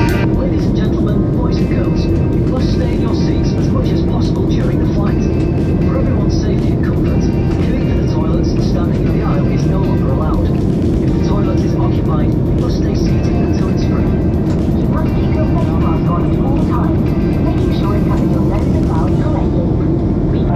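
Steady low engine and airflow noise inside an airliner cabin in cruise, with indistinct voices over it.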